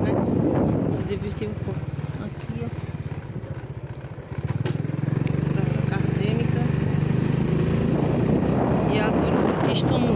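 Motorcycle engine running while riding along a town street. It eases off about three seconds in, then picks up again near the halfway mark and runs steadily.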